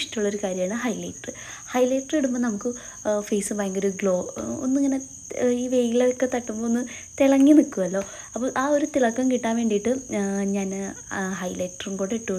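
A woman talking almost without pause, over a steady high-pitched chirring of crickets.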